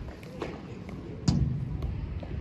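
Padel ball impacts during a rally: a sharp pop about half a second in, then a louder one about a second and a quarter in.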